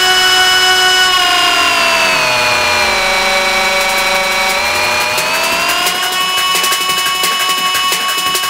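Drumless breakdown in an electronic techno track: a held chord of synthesizer tones slides down in pitch about a second in, holds, then slides back up about five seconds in.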